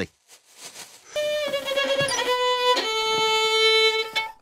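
Violin bowed through a slow descending scale: starting about a second in, three long held notes, each a step lower than the last. The scales sound terrible.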